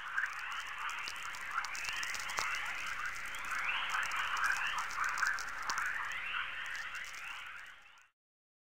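Natural very-low-frequency radio signals played as audio: a dense chorus of short rising chirps with scattered crackling clicks, dying away at the end.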